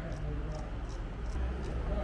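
Straight razor scraping through beard hair on the neck in short strokes, about five in two seconds, over a steady low hum.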